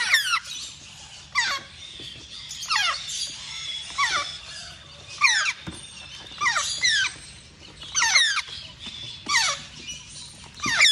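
Baby African grey parrot chicks giving repeated shrill squeals, about one a second, each sliding steeply down in pitch.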